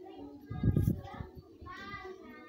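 An indistinct person's voice, rising and falling in pitch, with a couple of low thumps about half a second to a second in.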